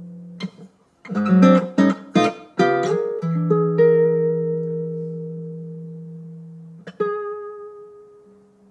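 Acoustic guitar playing in a slow, sparse passage. A quick run of plucked notes starts about a second in, then a chord is left to ring and slowly fade, and another note is plucked near the end.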